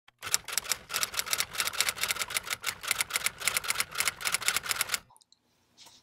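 A rapid, even run of sharp typewriter-like clicks, several a second, stopping about five seconds in.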